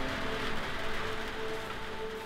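Rain pattering on a woodshed roof, fading, under background music with long held notes.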